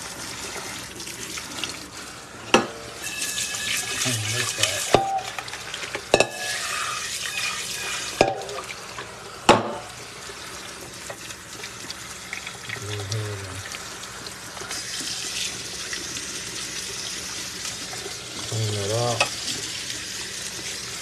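Kitchen faucet running onto broccoli in a small stainless steel strainer in the sink, water splashing over the florets to rinse the dirt off. A handful of sharp knocks in the first half as the metal strainer is handled in the sink.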